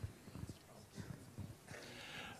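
Faint, scattered low knocks and rustles from a handheld microphone being handled as it is passed from one person to another.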